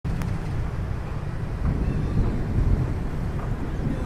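Wind buffeting the microphone: a steady, choppy low rumble, with faint outdoor background noise behind it.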